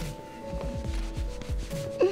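Soft rubbing and low dull thuds of handling noise, like fabric brushing close to the microphone. Quiet background music with long held notes runs underneath.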